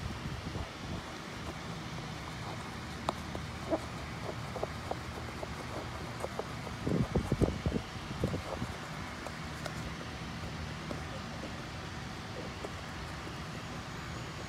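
Soft rubbing and scattered small knocks as a cotton swab is worked inside an engine's intake port, scrubbing loosened carbon off the backs of the intake valves. Under it runs a steady low hum. The knocks bunch up about seven seconds in.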